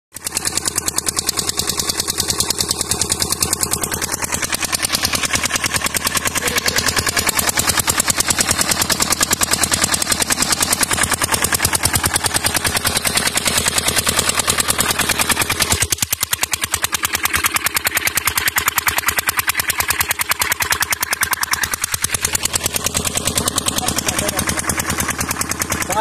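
Small irrigation pump engine running steadily on LPG from a gas cylinder, with a fast, even firing beat. It is a little quieter for a few seconds past the middle.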